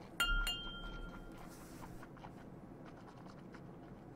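A stemmed whisky nosing glass clinking twice against glass, about a third of a second apart, each clink ringing on for about a second with a clear tone.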